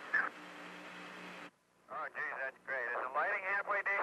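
Hiss and a steady low hum from an old radio transmission, cutting off abruptly about a second and a half in. After a short gap, a man speaks.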